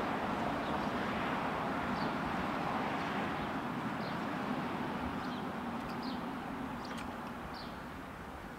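Steady outdoor background noise that fades a little toward the end, with faint high bird chirps every second or two and a faint click about seven seconds in.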